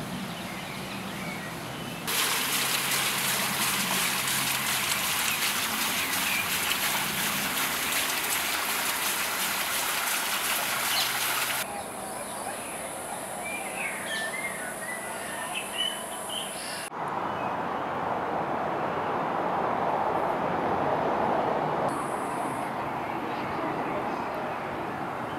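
Outdoor garden sound in several abrupt cuts: a steady rush of running water, then birds chirping over a high steady hiss, then a softer, lower rush.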